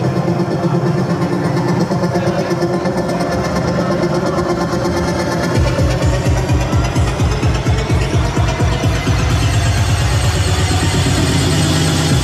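Electronic dance music from a DJ set, played loud through a sound system. About halfway through, a heavy bass line comes in with fast, evenly repeating pulses.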